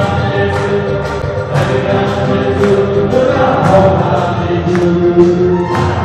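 A group singing a thanksgiving hymn together, led by a voice through a microphone and loudspeaker, with a sharp beat about once a second.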